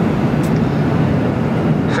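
Steady low roar of a Boeing 737-900 passenger cabin in flight, the engines and airflow heard inside the fuselage, with a faint click about half a second in.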